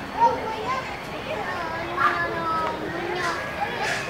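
Background chatter of children's voices, several talking and calling over one another.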